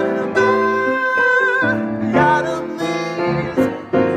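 Swing-style jazz piano chords on a grand piano, with a voice singing along without clear words: one long held note about a second in, then shorter sung phrases.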